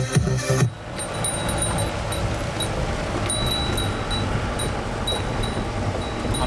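Music that cuts off sharply under a second in, followed by the steady rumble and road noise of a jeep heard from inside the cabin on a rough road, with a thin high ringing tone that comes and goes.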